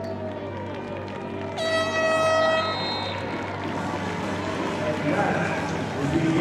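A single air horn blast, one steady tone held for about a second, sounding about one and a half seconds in over the general noise of an outdoor stadium crowd and voices.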